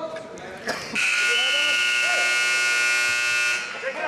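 Gym scoreboard buzzer sounding once, a steady, loud electric buzz of about two and a half seconds starting about a second in, signalling the end of the wrestling period.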